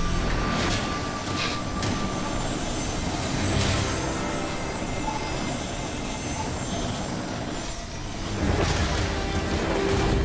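Drama soundtrack: background music mixed with a steady rushing, hissing layer of sound effects, with a low rumble swelling near the end.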